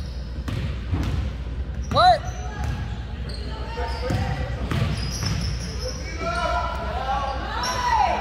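Basketball dribbled on a hardwood gym floor, echoing in a large gymnasium, with a sharp sneaker squeak about two seconds in. Players and spectators call out near the end.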